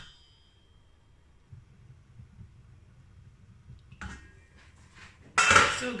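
Stainless steel pot lid: it rings faintly as it settles on the pot at the start. About five and a half seconds in, after a small knock, it is lifted off with a loud metallic clatter.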